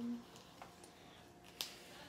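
A felt-tip marker's cap clicking once, sharply, about one and a half seconds in, as markers are swapped during colouring.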